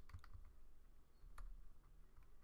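A few faint computer keyboard keystrokes: a short run of clicks at the start and a single click about one and a half seconds in.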